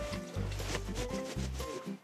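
Background music with a bass line moving between held notes.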